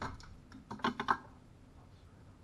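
Clicks and knocks from a Mercury V8 outboard's top cowling being unlatched by hand: one sharp click at the start, then a quick cluster of about six clicks around a second in, the last the loudest.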